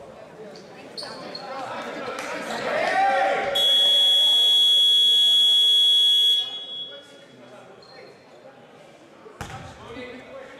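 A basketball game horn sounds one steady electronic buzz of about three seconds in a reverberant gym. Voices on the court come just before it.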